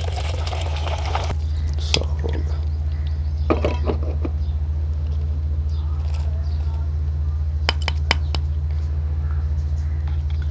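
Blended falsa sharbat pouring from a blender jar through a plastic strainer into a steel pot for about the first second. Then a few light clicks and knocks as the strainer and utensils are handled. A steady low hum runs under it all.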